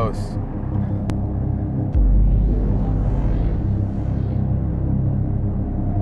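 Steady low road rumble inside a moving car's cabin, which steps up suddenly and gets louder about two seconds in. A soft hiss swells and fades in the middle.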